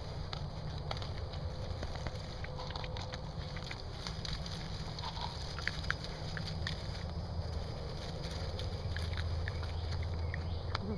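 Raccoons foraging in dry leaf litter close by: scattered crackles, clicks and rustles as they nose and paw through the leaves, over a steady low hum.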